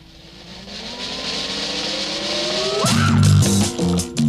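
Cartoon sound effect of a launched pinball rolling up the lane: a hissing whoosh with a few tones that slowly rise in pitch. About three seconds in, a funky music track with heavy bass and drums comes in over it.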